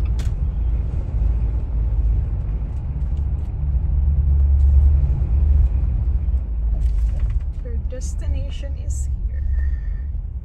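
Low, steady rumble of road traffic on an airport terminal's departure road, swelling about four to five seconds in. A few people's voices come through briefly near the end.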